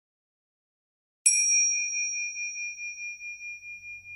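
Silence, then a little over a second in a single strike of a small high-pitched bell, ringing on with a pulsing wobble as it slowly fades.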